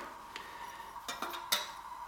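A few light metallic clinks and taps as a new Athena aluminium piston is lifted out of its metal tin, the loudest about a second and a half in.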